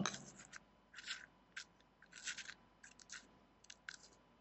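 Stainless-steel parts of a Kayfun 3.1 clone rebuildable tank atomizer being screwed together by hand: a string of faint, short scratchy rasps of metal threads turning.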